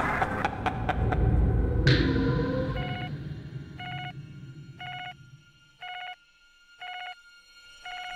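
Loud, low rumbling trailer music with a sharp hit about two seconds in, fading away. Then a pager beeps electronically in short, identical tones, about one a second, five or six times.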